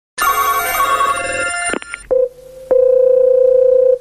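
A telephone ringing for about a second and a half, then a few handset clicks and a steady single-pitch line tone that runs on until the call's first words.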